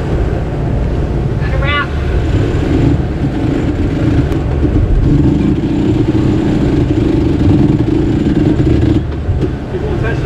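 Sailboat cockpit winch, most likely electric, hauling in a line under load. Its steady motor hum comes in about two seconds in, strengthens midway and cuts off about a second before the end, over a constant rumble of wind and water.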